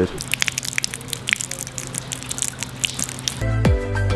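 Rain dripping in quick, irregular ticks over a low steady hum. Near the end, background music with a deep electronic kick-drum beat comes in.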